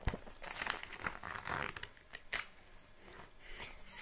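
Paper pages of a thin paperback picture book being turned and handled. A sharp flick right at the start, rustling for about a second and a half, another flick a little past two seconds, and a softer rustle near the end.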